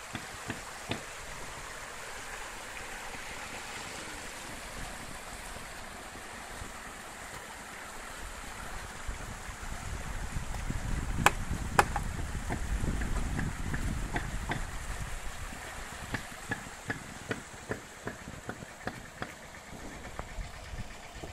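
Steady rush of a shallow rocky stream. About eight seconds in a low engine rumble from site machinery joins it for several seconds, with two loud sharp clacks of stone on stone near the middle and lighter stone knocks and taps in the later part.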